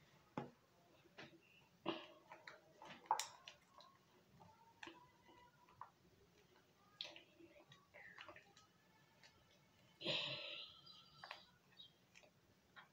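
Faint handling of a nearly empty Colgate toothpaste tube: scattered small clicks and crinkles as it is squeezed and worked, with a louder rustle about ten seconds in.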